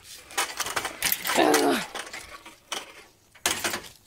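Rustling and clattering handling noise as a pool skimmer net holding a baby snake and debris is carried and jostled, in a string of short irregular bursts. A brief wordless vocal sound, falling in pitch, comes about a second and a half in.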